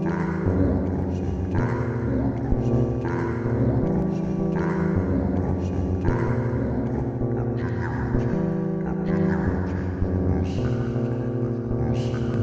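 Live electronic music from a Moog Subharmonicon and modular synthesizer rig: layered sustained synth tones in a sequence that repeats about every one and a half seconds.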